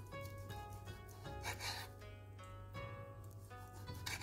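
Soft background music of plucked strings. A faint rasp of a knife slicing through cooked duck breast on a wooden board comes about a second and a half in.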